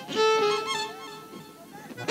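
Live band music in a quiet moment: a single melodic instrument holds a few wavering notes that fade away over about a second and a half.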